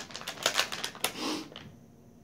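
Plastic bait bag crinkling and crackling in the hands with many sharp clicks, and a short sniff at the open bag just after a second in.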